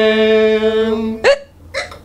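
A voice holds one long, steady sung note. About a second in it breaks off with a short upward yelp, like a hiccup, and a brief breathy sound follows.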